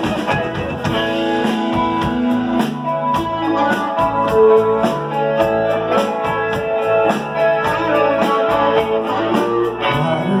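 Live band playing an instrumental passage: electric guitar lines over a drum kit keeping a steady beat.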